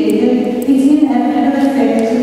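Unaccompanied singing, voices holding long notes that step from pitch to pitch in a slow melody.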